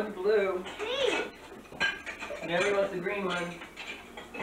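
Plates and cutlery clinking, with a sharp clink a little under two seconds in, under indistinct talk from several people.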